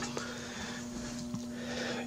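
Steady, faint electrical hum from a just-powered home-built battery charger circuit, a mains battery charger running a PWM that drives a bifilar coil, with two faint ticks.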